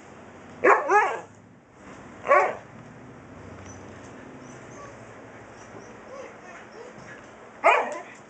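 A husky 'talking': short, pitch-bending vocal calls, two close together about a second in, another about two and a half seconds in, and one more near the end.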